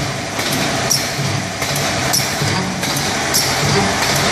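Automatic collar-type cup-filler pouch packing machine running, with a steady mechanical din and a sharp tick about every 1.2 seconds as it cycles.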